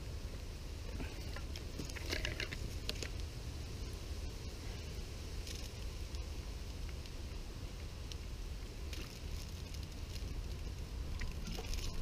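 Small twig campfire crackling, with scattered faint pops and snaps over a steady low rumble.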